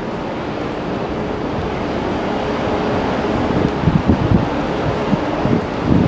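Street traffic with city buses running close by, and wind buffeting the microphone; the gusts get stronger in the second half.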